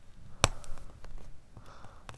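A pointed weeding tool picking a stray scrap of heat-transfer vinyl off denim: faint handling sounds, with one sharp click about half a second in.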